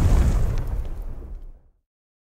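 The tail of an explosion sound effect: a deep rumble dying away with a few faint crackles, fading out within about a second and a half.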